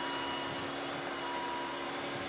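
Steady hum inside the cabin of a 2002 Volvo S80 with its twin-turbo straight-six engine idling.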